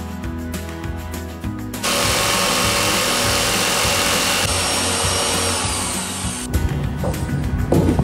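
A jigsaw cutting a thin luan plywood panel: the blade runs steadily from about two seconds in until about six seconds, over background music. A few irregular knocks follow near the end.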